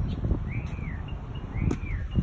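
A bird calling twice: two short arched chirps, each rising then falling in pitch, about a second apart, over a steady low rumble.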